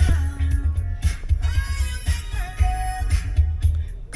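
A song with a heavy, pulsing bass line playing on a car stereo, with a woman singing along.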